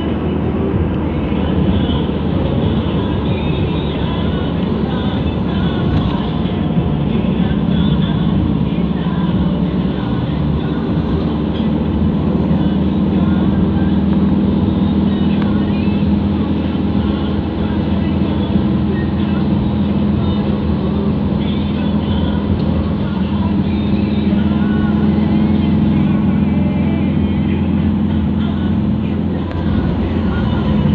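Steady engine and tyre drone heard inside a moving car's cabin, with a constant low hum.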